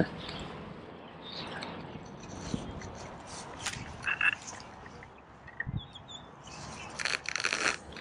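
Frogs croaking, faint and off and on, with a short burst of rapid rattling pulses near the end.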